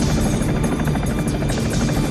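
Helicopter rotor blades beating rapidly and steadily as the helicopter flies low, with music playing over it.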